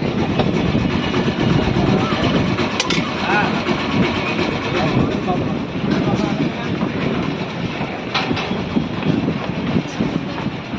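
Wind buffeting the microphone in a steady rumble, over indistinct voices of people talking, with a couple of short clicks.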